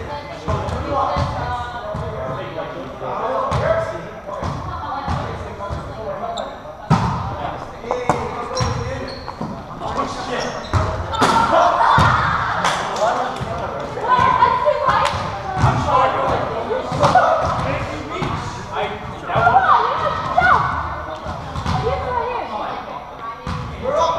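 Indoor volleyball rally in a reverberant gymnasium: repeated sharp hits of the volleyball, irregularly spaced, over a continuous murmur of players' voices.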